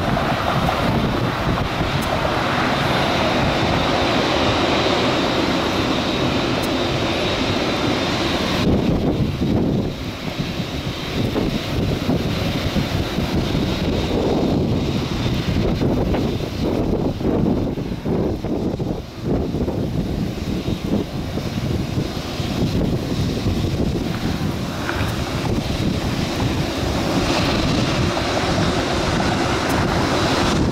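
Jet airliner engines running at a distance, a steady rushing noise with a thin high whine, mixed with wind on the microphone. The whine and much of the treble drop away about nine seconds in.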